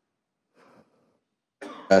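A short, loud cough near the end, after more than a second of near silence, running straight into a spoken answer.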